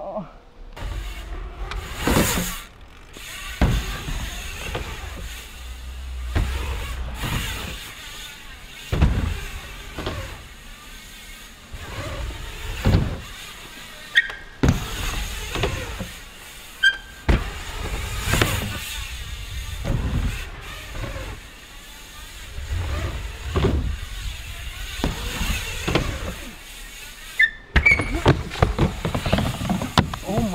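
BMX bike tyres rolling on a plywood ramp, with repeated knocks every second or two from landings and ramp transitions. A few short tyre squeals on the wood come near the middle and near the end.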